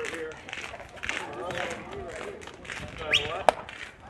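Voices of spectators and players chattering and calling out at a baseball game, with a rising shout just after three seconds. About half a second later comes one sharp smack of the pitched ball at home plate.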